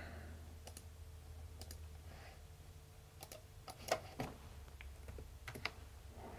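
Faint, scattered clicks of a computer mouse and keyboard, a handful spread over a few seconds, over a low steady hum.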